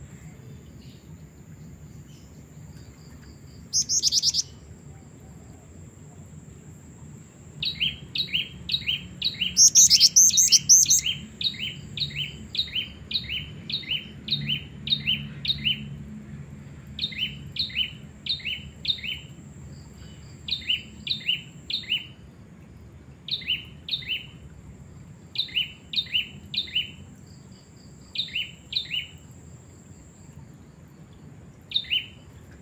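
Female black-winged flycatcher-shrike (jingjing batu) calling: runs of short, sharp, downward-slurred notes, several in quick succession, separated by brief pauses, with a louder, harsher burst about ten seconds in. This is the bright, persistent female call that keepers use to draw in males.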